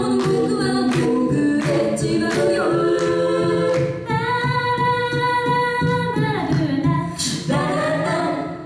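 A cappella group of female voices singing in harmony over a steady beat. About halfway through they hold one long chord for some two seconds, then sing a few closing phrases.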